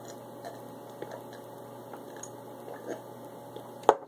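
A person drinking eggnog from a glass, with faint swallowing and mouth sounds. One sharp click comes just before the end.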